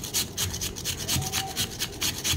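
Raw potato grated by hand on a metal flat grater: a quick, even run of rasping strokes.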